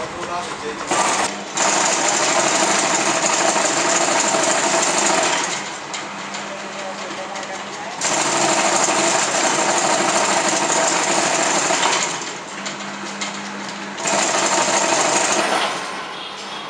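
Chain-link net machine running as it winds galvanized wire into a zigzag spiral, a fast mechanical rattle that comes in three runs of a few seconds each, with quieter pauses between runs.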